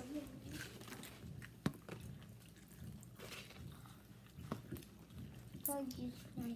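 Quiet chewing and biting of fried chicken and fries, with scattered small clicks and crunches. A short hum of voice comes near the end.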